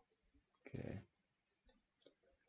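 Near silence with a few faint clicks, broken a little before a second in by one short vocal sound from a person, lasting about a third of a second.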